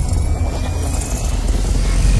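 Cinematic logo-intro sound effect: a deep, steady low rumble with a faint thin tone slowly rising above it.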